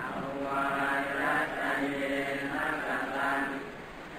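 Buddhist monks chanting Pali in unison on a steady recitation tone, phrase after phrase, with a brief breath pause near the end. It is the formal request for forgiveness offered to a senior monk, which he answers with the Pali reply of pardon.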